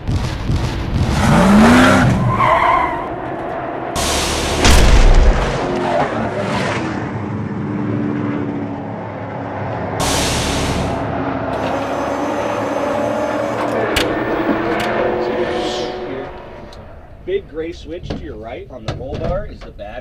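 Intro sound effects of a race car: engine running and revving with tyre screeching, whooshes and a deep boom about four to five seconds in. A man's voice takes over near the end.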